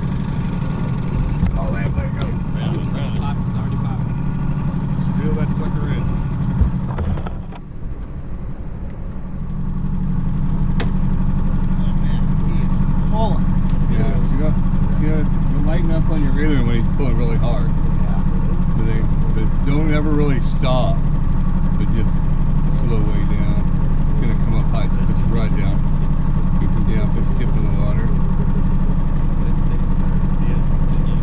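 Fishing boat's outboard motor running steadily at trolling speed, a low even hum. The hum dips about seven seconds in and comes back a little louder a couple of seconds later.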